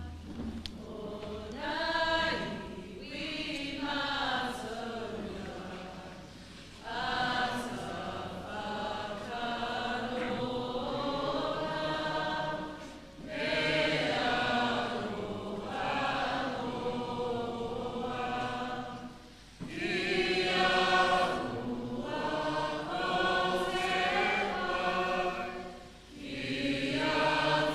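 Choir singing in long, even phrases of about six seconds each, with brief breaks between them.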